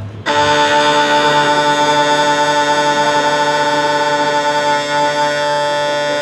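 Uilleann pipes' drones sounding a steady, unwavering D together while being tuned to one another; the held tone starts a moment in.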